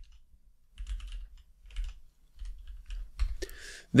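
Computer keyboard being typed on: scattered keystrokes in small clusters, with soft low thuds beneath them, as a short file name is entered.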